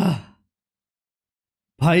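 A man's brief voiced sigh, falling in pitch, at the very start, then silence until he starts speaking near the end.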